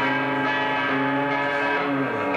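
Live rock band holding a sustained, ringing chord on electric guitar and bass, the notes held steady and changing just at the end.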